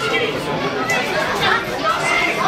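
Crowd of spectators chattering, with several voices overlapping and some raised or called out, none clearly making words.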